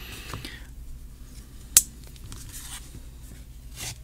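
Folding pocket knife being worked against a plastic-and-card retail pack: one sharp click a little before halfway, then light scraping of the blade on the plastic as the cut begins.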